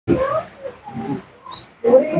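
A person's voice making a few short vocal sounds in quick bursts, with no recognisable words.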